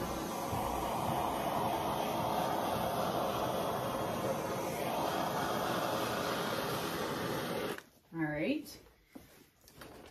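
Handheld butane torch burning with a steady hiss, passed over wet acrylic paint to pop air bubbles in the pour; it cuts off suddenly about eight seconds in.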